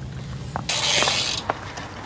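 Bicycle freewheel hub ratcheting in a brief fast buzz as a wheel spins, followed by a single click.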